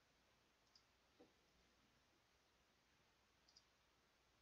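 Near silence: faint room tone with three small, faint clicks spread through it.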